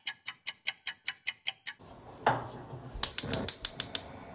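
A typewriter-style keystroke sound effect clicking evenly, about five clicks a second, over dead silence for the first two seconds. Then, after a soft knock, a gas stove's spark igniter clicks rapidly near the end as the burner lights.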